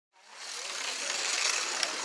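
Slot car's small electric motor whirring as it runs along the track, fading in at the start and growing a little louder, with a single sharp click near the end.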